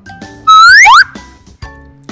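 A short whistle sound effect, about half a second long, that holds one note and then slides sharply upward, over quiet background music.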